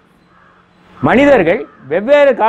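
A crow caws once about a second in: a single harsh call of about half a second, after a brief lull in the talk.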